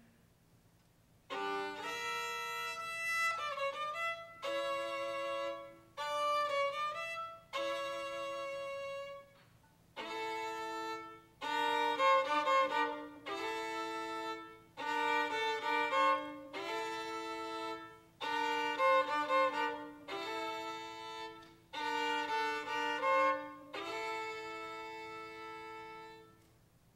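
Student string orchestra of violins, violas and cellos playing bowed chords in a series of short phrases with brief pauses between them. It begins after about a second of near silence and fades out near the end.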